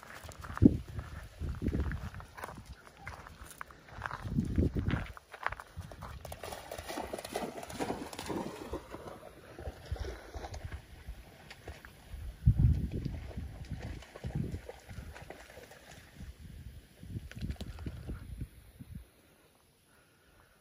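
Irregular low rumbles and thumps with some rustling, the kind of wind and handling noise a phone microphone picks up outdoors. The loudest thumps come about four and twelve seconds in.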